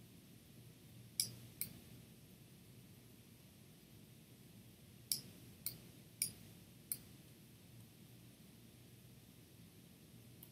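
Computer mouse buttons clicking: six short, sharp clicks, a pair about a second in and four more in the middle, over a faint low hum.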